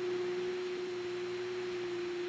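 Steady electric hum on a single pure tone, with faint hiss beneath it: a sound effect for an electric turbine generator running.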